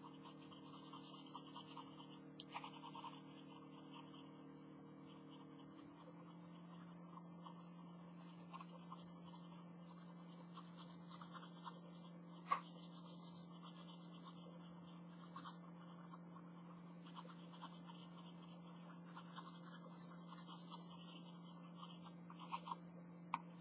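Felt-tip pen scratching faintly on sketchbook paper in short strokes as black areas are inked in, with one sharp tick about halfway through. A faint steady hum sits underneath and drops in pitch about six seconds in.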